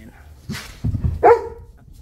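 A pet dog barking: one loud bark a little past a second in, after a short rough huff about half a second in, reacting to something outside.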